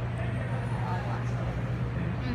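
A steady low hum, with faint voices of people talking in the background.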